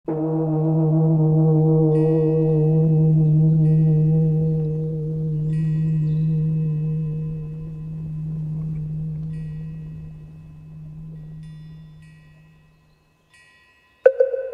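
A deep bell tone struck once, ringing out and slowly dying away over about thirteen seconds, with short high tinkling chimes sounding several times over it.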